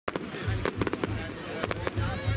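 Fireworks going off in a rapid series of sharp cracks and bangs from bursting shells.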